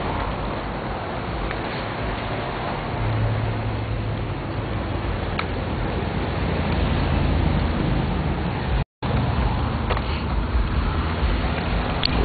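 Steady road traffic and engine noise, with a low engine drone that grows stronger about three seconds in. The sound drops out completely for a split second near the nine-second mark.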